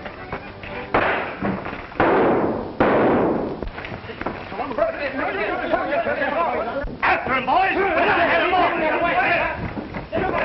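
Three loud gunshots about a second apart, each with a ringing tail, followed by a confused hubbub of men's voices shouting.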